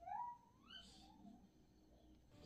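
A cat meowing faintly: one short call rising in pitch within the first second, followed by quiet room tone.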